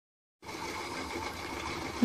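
Steady background hiss and hum with a faint high whine, starting about half a second in: room tone picked up by the recording device before anyone speaks.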